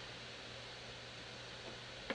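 Quiet, steady room tone: an even hiss with a faint low hum underneath.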